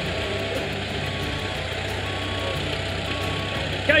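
Manitou telehandler's diesel engine running steadily while its reversing alarm beeps about once a second, each beep a short steady tone: the machine is backing up.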